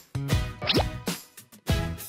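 Upbeat background music with a steady beat, with a quick downward-sliding cartoon-style sound effect a little past a third of the way in. The music drops out briefly just before the end.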